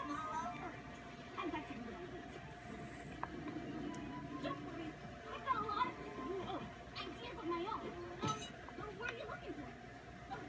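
A cartoon playing on a television in the room: character voices over background music.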